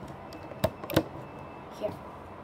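Sharp plastic clicks of a crochet-style loom hook knocking against the plastic pegs of a Rainbow Loom as bands are lifted off: two clicks close together about half a second in, and a softer one near the end.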